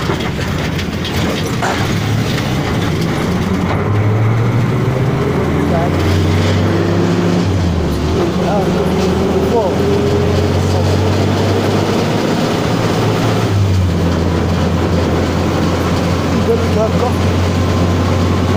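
Motorcycle engine running under way with a steady low hum, its pitch climbing slowly for a few seconds as it speeds up, over rough road and wind noise.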